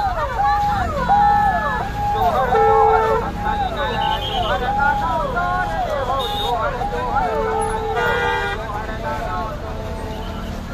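A dense crowd with many horns tooting over one another: each toot is a held note that slides down in pitch at the end, several a second.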